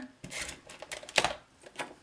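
Sheets of card stock being handled and pressed together on a tabletop: soft rustling with a few light taps, the sharpest about a second in.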